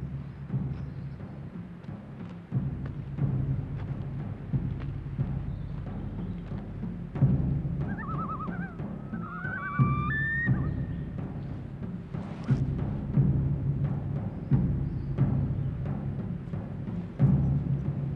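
Orchestral film score: repeated deep timpani-like drum strokes at uneven spacing, with a short wavering high melodic line about eight to eleven seconds in.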